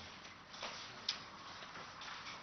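Faint room noise in a pause, with two light clicks, about half a second and a second in.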